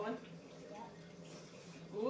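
A lull in children's chatter: a voice trails off just after the start, then low room tone with a steady low hum and faint, brief voice murmurs.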